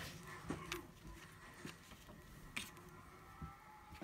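Faint handling of planner paper and stickers by hand: a few soft taps and rustles, scattered clicks through an otherwise quiet stretch.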